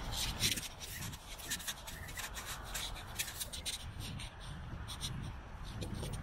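Walking sounds on a handheld camera: frequent, irregular scuffs and rubbing close to the microphone, from shoes on paving slabs and the hand or clothing against the camera, over a low wind rumble.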